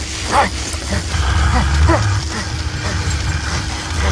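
Film sound effects for a hell scene: a loud, steady deep rumble with several short cries that fall in pitch over it.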